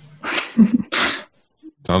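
A person laughing in two short, breathy bursts of air.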